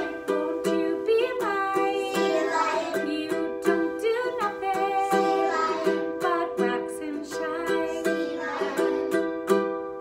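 A woman singing a children's song, accompanied by steady strumming on a ukulele at about three strokes a second.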